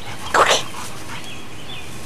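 A dog gives one short, rough bark about half a second in, during rough play with another dog.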